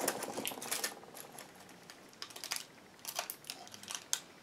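Light, irregular clicks and rustles of small hair clips being handled and picked out of their packaging, a cluster in the first second and more in the second half.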